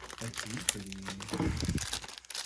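Clear plastic toy packaging crinkling and rustling as hands handle and pull at a boxed doll's wrapping, in short irregular crackles.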